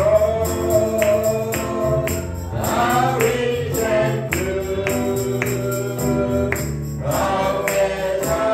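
Gospel song: voices singing held, changing notes over a tambourine that keeps a steady beat of about two strokes a second.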